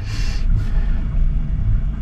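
Steady low rumble inside the cabin of an aluminium sailboat under way, with a short hiss in the first half second.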